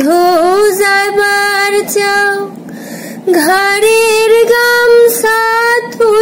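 A woman singing a Bangla folk song unaccompanied, holding two long notes with a short breath between them about halfway through.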